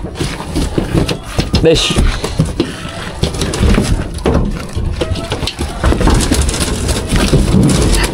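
Calves' hooves clattering and thumping irregularly on a truck's steel-grated floor and metal unloading ramp as they are driven off, with a man's brief shout of "đi" (go) urging them on.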